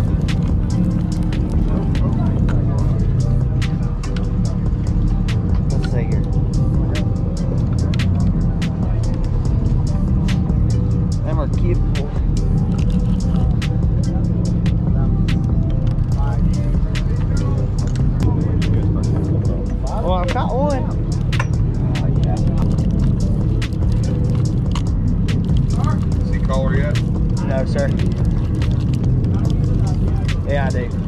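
Steady low rumble of the boat's engine under wind on the microphone, with scattered sharp clicks as a conventional fishing reel is cranked. Indistinct voices come and go, strongest about two-thirds of the way in and near the end.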